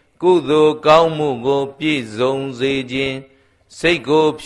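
A Buddhist monk's male voice in an intoned, chant-like recitation, with a short pause a little past three seconds in.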